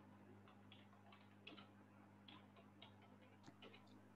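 Near silence: faint, irregularly spaced small clicks over a steady low electrical hum.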